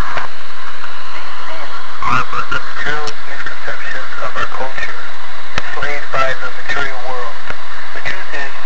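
A person's voice heard through a loud, hissy, lo-fi recording, with the talking starting about two seconds in; the words are not made out.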